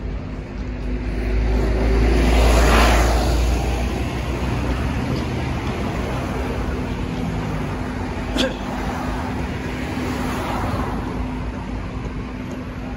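City street traffic at a junction, with a steady rumble of cars. A car passes close and loud about two to three seconds in, another passes more softly near the end, and there is a single sharp click about eight seconds in.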